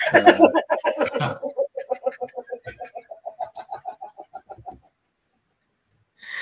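High-pitched laughter: a loud burst that trails off into a long, fast run of short, even 'ha' pulses, fading out after about five seconds.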